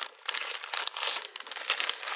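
Wrapping paper crinkling as it is torn off a wrapped book, in a run of quick irregular bursts.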